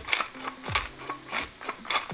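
Pepper mill being twisted over a pan, giving a dry rasping grind, under background music with a steady beat.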